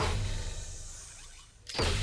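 Commercial soundtrack hit: a sharp, full-range impact at the start whose tail fades away over about a second and a half, over a low bass tone. A second sharp hit comes just before the end.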